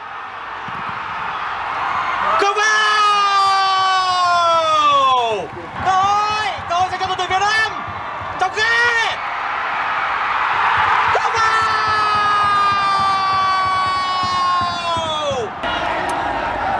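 A football commentator's excited, drawn-out shouts. One long held cry starts a couple of seconds in and falls away in pitch, a few shorter cries follow, and a second long held cry in the second half sags at its end.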